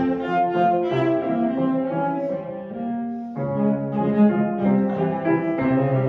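Cello and grand piano playing a classical duo: bowed cello notes over piano chords. A new phrase starts about three and a half seconds in.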